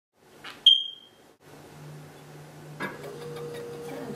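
A single sharp, high beep-like ding about half a second in, ringing out and fading within half a second; it is the loudest sound. It is followed by a low steady hum, joined near the three-second mark by a click and a second, higher steady tone.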